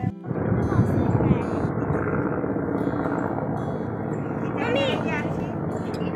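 An aircraft flying overhead: a steady drone with no clear rhythm, and a voice heard briefly about five seconds in.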